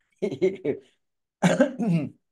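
A man laughing: a few short bursts of laughter in the first second, then more voice near the end.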